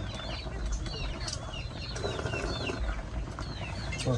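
Birds chirping: many short high calls, each falling in pitch, repeated throughout over a low rumble.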